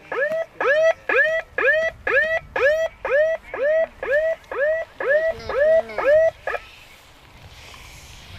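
A man's voice calling out the same short word over and over in a steady rhythm, about two and a half times a second, each call alike in pitch and shape. The calls stop about six and a half seconds in.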